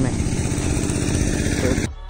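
A vehicle engine running steadily close by, a continuous low rumble with noise over it; electronic music comes in just before the end.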